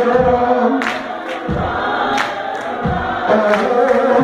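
Gospel choir singing together, with sharp percussive hits keeping the beat.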